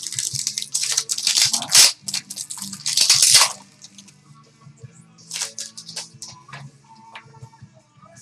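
Crinkling and rustling of a trading-card pack being opened and the cards handled, loudest and densest in the first three and a half seconds, with a few lighter clicks later. Background music plays steadily underneath.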